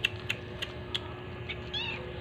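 A kitten gives one short, high mew near the end, over a string of light clicks and scratches as the kittens move about.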